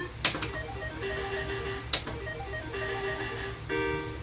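Electronic beeps and jingle tones from an Island 2 video slot machine while its reels spin, with two sharp clicks along the way. Near the end a short cluster of tones sounds as a small line win lands.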